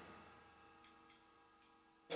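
Near silence after the drumming has stopped, with three faint ticks.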